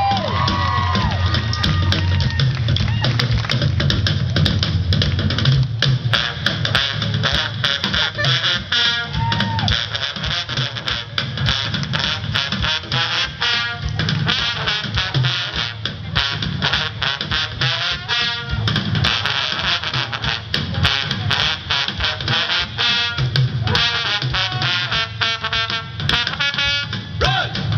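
Live Celtic rock band playing, with a busy drum kit to the fore and trombones.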